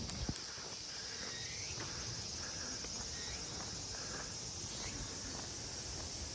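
Steady high-pitched chorus of insects, with faint footsteps of someone walking on a paved path.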